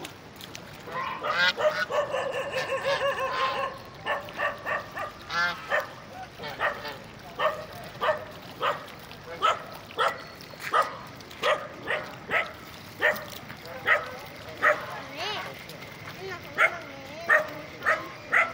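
A flock of domestic geese honking. A dense run of overlapping calls comes in the first few seconds, then short single honks follow, about one or two a second.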